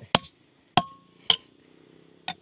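Hammer striking a steel chisel set into a rock slab to split it: three sharp metallic blows, the second leaving a short ringing tone.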